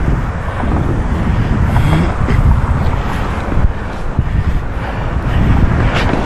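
Wind buffeting the microphone over a steady rumble of inline skate wheels rolling on a concrete sidewalk.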